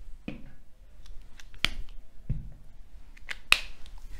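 Marker pen on a whiteboard: scattered short taps and squeaky strokes as writing goes on, with a sharp click about three and a half seconds in.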